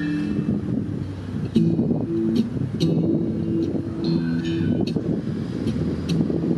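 Acoustic guitar strumming chords in an instrumental break between sung verses, with a few sharp strums standing out. A steady rumble of street traffic runs underneath.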